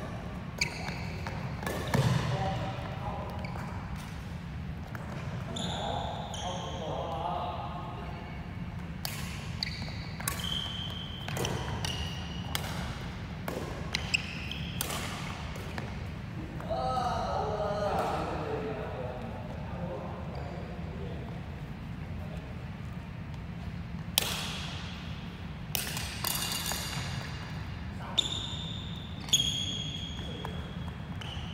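Badminton rackets hitting a shuttlecock in a rally, sharp smacks at irregular intervals with a short echo of a large hall after them. Shoes squeak briefly on the wooden court floor between shots.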